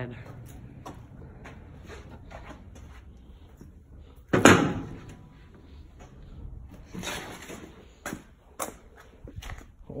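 Handling noise from rummaging through garage hardware: scattered clicks and knocks, with one loud knock about four and a half seconds in and a brief scraping rush near seven seconds.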